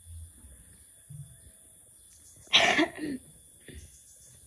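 A loud cough about two and a half seconds in, followed at once by a shorter second burst.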